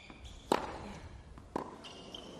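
Tennis rally on a hard court: a racket strikes the ball about half a second in and again about a second later, with short high shoe squeaks between the shots.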